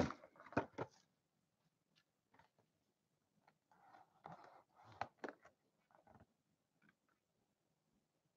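Faint handling noises of a small cardboard trading-card box: scattered light clicks and rustles as it is gripped and its lid flap is worked open, with two sharper ticks about five seconds in.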